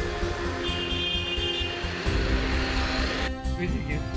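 Film background music: sustained tones over a steady rhythmic beat.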